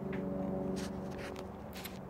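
A low, steady hum made of several stacked tones, with a few faint rustles and clicks.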